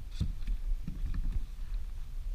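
A hooked walleye splashing at the surface beside a kayak as it is netted, a few short splashes over a steady low rumble of wind buffeting the microphone.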